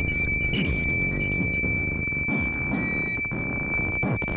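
Dense, noisy electronic music from a Plumbutter analog synthesizer sampled and processed through a monome-controlled Max/MSP patch: a steady high whistle-like tone held over a churning low end with repeated short falling pitch drops.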